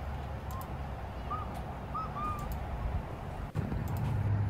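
A shallow river runs steadily over rocks, and a bird chirps a few short times over it.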